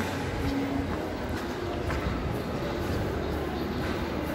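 Steady low rumbling background noise with a few faint ticks, heard while walking through an indoor corridor.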